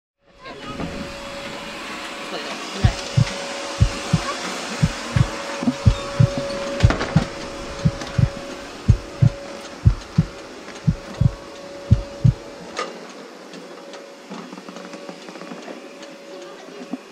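Heartbeat sound effect: deep paired thumps, lub-dub about once a second, starting about three seconds in and stopping about thirteen seconds in, over a steady hum and noise.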